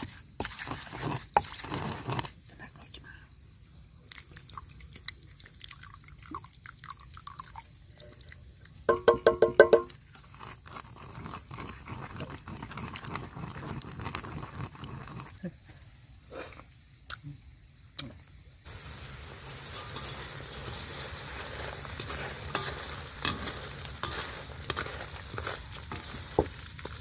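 Pestle knocking and grinding in a mortar, over a steady high insect drone, with a short run of quick pitched calls about nine seconds in. About two-thirds of the way through the sound changes to the steady sizzle of dung beetles deep-frying in oil in a wok.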